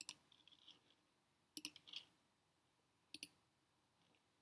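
Computer mouse clicks in three short groups about a second and a half apart, each a quick pair of sharp clicks, with faint room quiet between.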